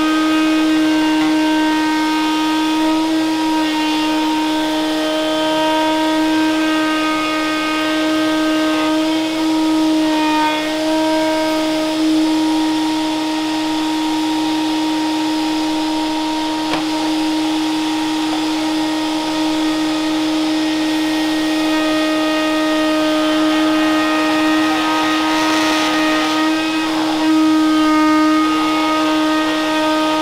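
Router spinning in a Festool CMS router table, a steady high whine, while a cherry workpiece taped to an MDF template is fed past a bearing-guided trim bit. The cut adds a rougher shaving sound that rises and dips as the wood is trimmed flush to the template.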